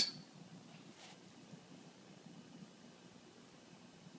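Quiet room tone, a faint steady hiss, with one faint soft tick about a second in.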